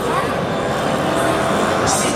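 Busy city-street din: a steady rumble of traffic mixed with the chatter of a crowd of voices.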